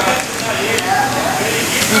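Steady hissing background noise of a busy snack bar with faint voices under it; a hesitant 'um' comes right at the end.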